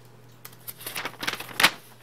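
Folded sheet of stiff brown kraft paper being handled and opened out: a run of crisp paper rustles and snaps starting about half a second in, the sharpest one near the end.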